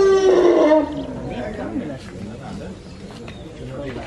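A young elephant calf's long, high squealing call, held steady and then falling in pitch as it ends less than a second in, at milk-bottle feeding time. Quieter voices follow.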